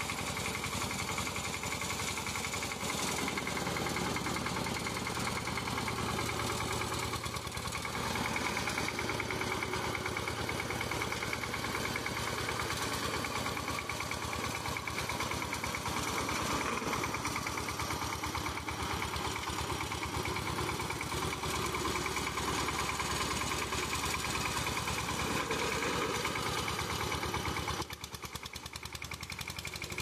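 Small engine of a homemade jerico-style mini tractor running steadily at idle with a fast, even firing beat. It dips quieter briefly near the end.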